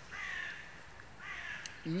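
A crow cawing twice, two short harsh calls about a second apart, set further off than the voice that follows.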